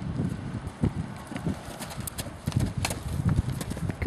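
Hoofbeats of an Irish Draught cross Thoroughbred horse on grass turf, a run of repeated dull thuds that grow a little louder toward the end.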